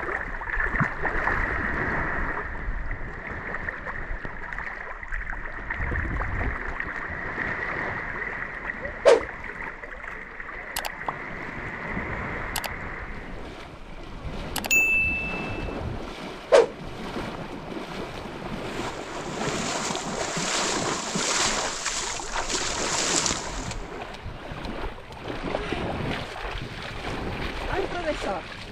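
Shallow sea water splashing and sloshing around a swimmer wading in the shallows, with wind on the microphone and a steady high drone in the background through the first half. Several sharp clicks and a short bell-like ding come from an on-screen subscribe-button animation, the ding about halfway through.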